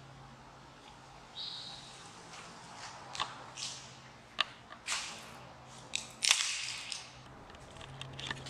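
Footsteps on a debris-strewn concrete floor, a handful of sharp, irregular clicks and crackles, the loudest about six seconds in, over a faint steady low hum.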